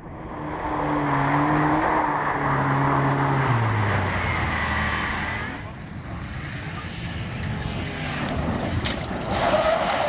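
Rally car engine running hard on a gravel stage, its pitched note stepping down about three and a half seconds in. From about six seconds in, an Audi A4 Avant rally car drives through a gravel corner, tyres scrabbling on loose gravel over the engine, loudest near the end.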